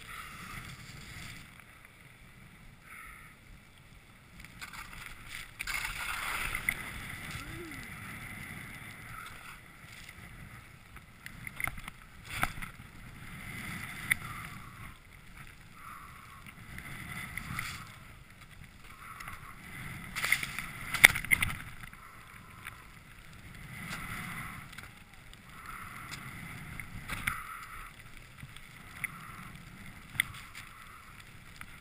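Skis hissing through deep powder snow in a run of turns, each turn a swell of hiss every two to three seconds, with wind on the microphone. A few sharp knocks cut through, the loudest about twenty seconds in.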